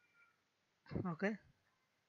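Only speech: a single spoken word, "okay", about a second in, with quiet room tone around it.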